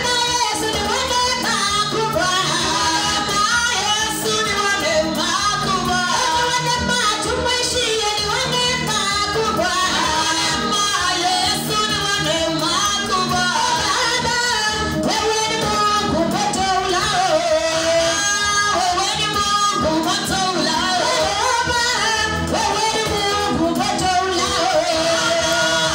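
A woman singing a worship song through a microphone and PA, over a steady musical accompaniment.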